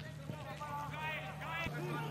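Footballers' shouted calls on the pitch of an empty stadium over a steady low hum, with one thud of a ball being kicked near the end.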